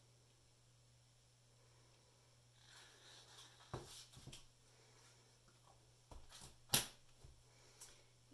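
Quiet handling of plastic paint cups: a few light knocks around four seconds in and one sharp click near the end as a cup is set down and another picked up, over a faint steady hum.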